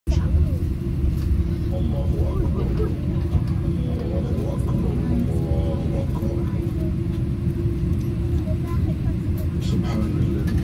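Steady low rumble of an airliner cabin while the plane taxis, with faint voices in the cabin.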